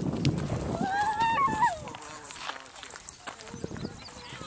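A child's high voice calling out once in a drawn-out call that rises and then falls, after low, indistinct talk at the start.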